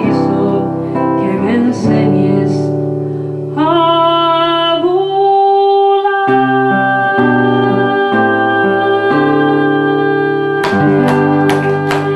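A woman singing live to a classical guitar accompaniment, ending on one long held note over sustained guitar chords, with a few sharp strums near the end.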